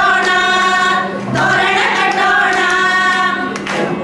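A group of women singing together in unison, in long held phrases that break briefly about a second in and again just before the end.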